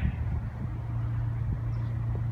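Wind buffeting the phone's microphone as an irregular low rumble, with a steady low hum coming in about half a second in.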